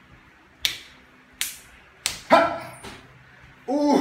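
Open-hand slaps landing during father-and-son slap-boxing: three sharp smacks about three quarters of a second apart. A short yelping cry follows, and a laughing voice starts near the end.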